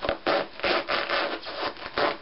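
Shiny rubber rain boots rubbing and scuffing against each other and the cushion underfoot as the wearer shifts her legs, in a quick series of rough scuffs.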